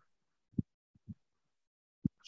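Mostly quiet, with two brief, soft low thumps about half a second and a second in.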